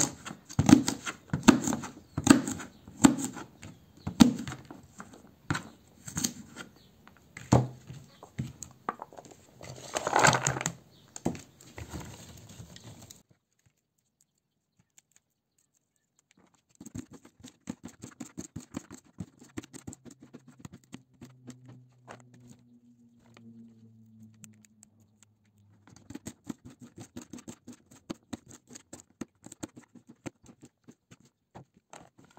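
Kitchen knife slicing green beans on a plastic plate: a run of sharp taps as the blade cuts through and strikes the plate, about one and a half a second. The taps stop for a few seconds about halfway, return fainter, and come quicker near the end.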